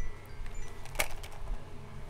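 Quiet room background noise with a low steady hum, broken by a single sharp click about a second in.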